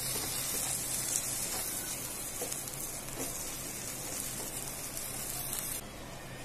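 Egg, onion and vegetables sizzling in oil in a nonstick pan while being stirred with a spatula: a steady frying hiss with light scrapes. The sizzle cuts off suddenly near the end.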